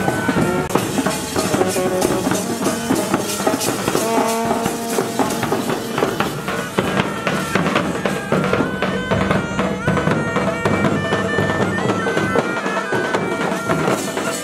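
Pipe band playing: bagpipes carrying a stepping melody over their steady drone, with drums beating a dense, regular rhythm.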